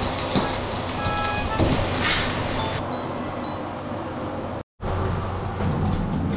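Light background music with short pitched notes over a steady rushing noise. The sound cuts out completely for a split second about three-quarters of the way through.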